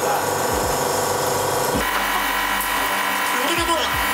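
Espresso machine pump running steadily during brewing, a continuous mechanical hum whose low tone shifts about two seconds in.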